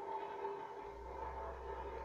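Faint room tone with a steady hum, joined by a deeper low hum a little under a second in.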